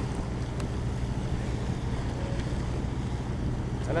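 Houseboat's engine running steadily underway, a constant low hum, with wind buffeting the microphone and the rush of water around the hull. A voice comes in right at the end.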